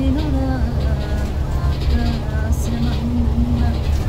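A woman singing a Telugu Christian song unaccompanied, in short held notes, over the steady low rumble of a moving bus heard from inside.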